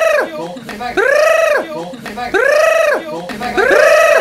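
A high, pitched call that rises and falls in a single arch, repeated at very even spacing about every 1.3 seconds like a loop, three times. Near the end two copies overlap.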